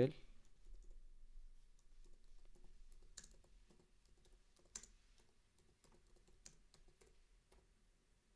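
Quiet typing on a computer keyboard: a run of soft, irregular key clicks with a few sharper taps.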